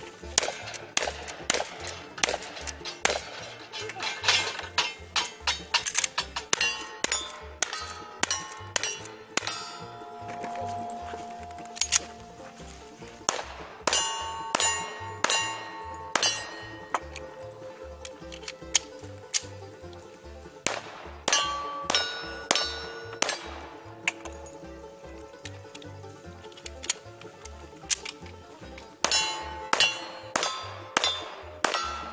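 A string of gunshots, first from a long gun and then from a pistol, with hit steel targets ringing after many of them. Bluegrass banjo music plays underneath.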